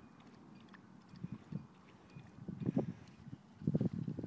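A dog lapping water from a muddy puddle: a run of quick, wet laps that starts faint about a second in and grows louder and faster toward the end.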